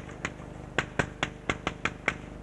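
Chalk clicking against a blackboard as a word is written by hand: about eight sharp, irregularly spaced taps, one with each stroke.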